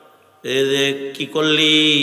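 A man's voice through a microphone and PA delivering a Bangla sermon in the drawn-out, chanted tone of waz preaching: two long held phrases starting about half a second in, each dying away slowly.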